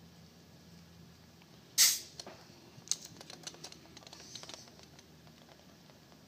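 A short hiss about two seconds in, as the pressure is let off the compression gauge, followed by light scattered metallic clicks of the gauge hose and its fitting being handled at the outboard's spark plug hole.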